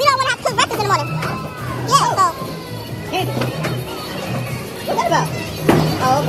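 Background music with a repeating bass line, with high-pitched voices calling and chattering over it.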